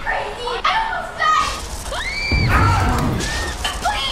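Frantic shouted dialogue with a high scream about two seconds in, followed at once by a low rumble.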